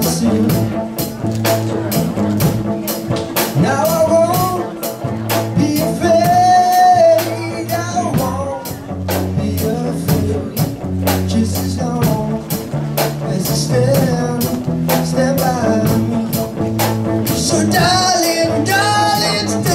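A small rock band playing live: electric bass, electric guitar and a drum kit keeping a steady beat, with a male lead vocal singing over them.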